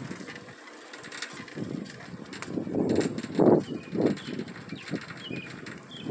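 A bicycle ridden along a paved road: uneven low rushing gusts with scattered light rattles, the loudest gust about halfway through, and a few faint high bird chirps.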